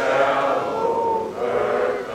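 A crowd of men and women singing together slowly, with long held notes.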